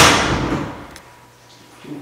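A single sharp bang right at the start that dies away over about half a second: a closet door banging against its stop as it is pushed open.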